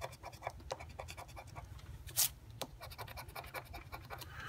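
Scratch-off lottery ticket being scraped with a flat hand-held scraper: quick, short rasping strokes several times a second as the coating comes off the play area, with a couple of louder strokes a little over two seconds in.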